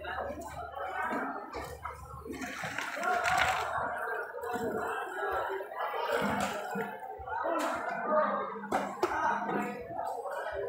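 Indistinct, muffled voices talking continuously, with no words that can be made out.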